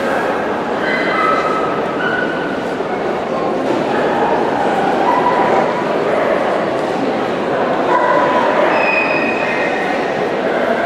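Dogs barking and yipping in short high calls over the steady chatter of a crowd.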